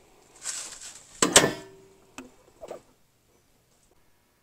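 Handling and movement noise: a short brushing sound, then two sharp knocks close together about a second in, a click and a brief faint sound, before the audio cuts off.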